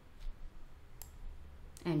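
A few sharp computer mouse clicks, spaced out, as the Python program is run in the editor.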